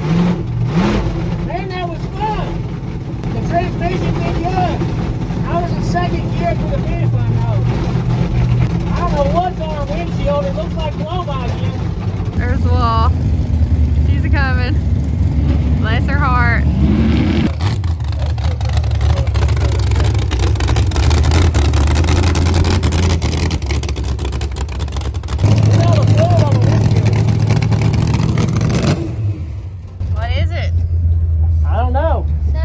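Car engines running under voices. About halfway through, a loud rushing noise takes over for about ten seconds, and a strong low engine sound comes in near the end.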